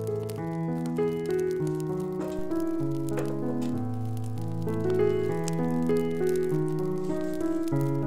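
Background music of held chords that change every second or so, with faint, irregular crackling clicks underneath from a newly lit fire burning in a wood-burning stove.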